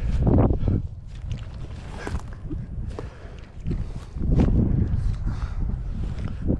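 A just-landed sunfish flopping on grass while it is walked up to and picked up: rustling, soft thumps and steps in the grass over a steady wind rumble on the microphone. The louder stretches come right at the start and again about four seconds in.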